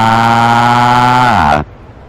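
A long, drawn-out crying wail from a cartoon character, held on one pitch, then sliding down and breaking off about one and a half seconds in.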